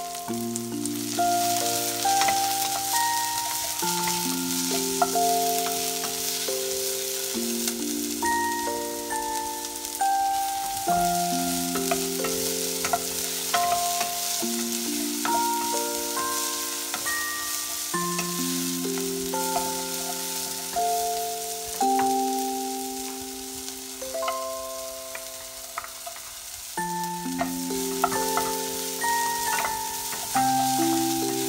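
Chopped onions with green chillies and curry leaves sizzling in oil in a non-stick frying pan, stirred now and then with a wooden spatula, as they cook down until soft. A slow, light instrumental tune plays over the frying.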